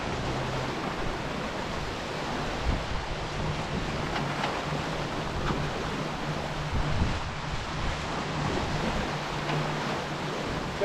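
Water rushing and splashing along the hull of a Fareast 28R sailing yacht running fast under spinnaker, mixed with wind buffeting the microphone. A couple of louder splashes stand out, about three seconds in and about seven seconds in.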